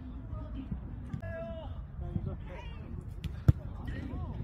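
Players' voices calling on a jokgu court, with one drawn-out high call a little over a second in. About three and a half seconds in, the jokgu ball is struck once with a single sharp thump.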